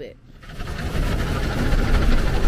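Automatic car wash heard from inside the car: loud spraying water and wash machinery over a low rumble, starting about half a second in and building to a steady din.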